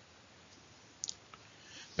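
Near-silent room tone with a short, sharp click about halfway through and a fainter click just after it, then faint noise rising just before speech begins.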